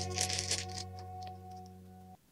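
A thin plastic bag crinkling as fingers work inside it, mostly in the first half-second. Under it plays background music with long held notes that fade away toward the end.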